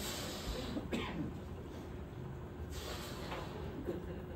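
A man breathing in from a helium-filled rubber balloon held to his mouth: short breathy draws at the start, about a second in and again near the three-second mark.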